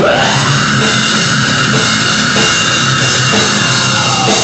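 Live metal-hardcore band playing loud: electric guitars over a drum kit.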